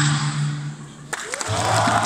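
Amplified dance music with a held bass note fades out about a second in. Then come sudden sharp claps and a rising cheer from the audience.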